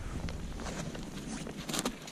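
Handling noise as a flasher sonar unit in its soft carry case is grabbed and lifted off the snow beside an ice hole: light rustling and scuffing, with a brief sharper crunch near the end.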